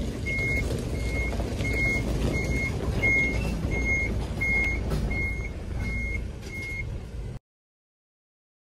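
Tractor-trailer reversing, its reversing alarm beeping at one steady high pitch about one and a half times a second over the deep rumble of the engine. The sound stops abruptly near the end.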